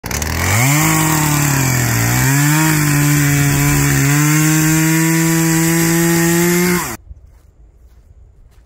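A chainsaw revs up to speed and cuts into a log. Its pitch sags under the load at about two seconds, climbs back and holds steady, then the sound stops abruptly near the end.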